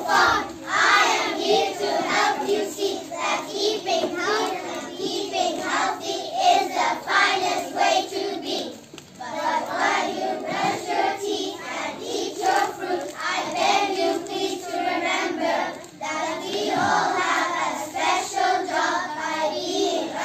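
A group of young children singing a song together in unison, with short breaks between lines.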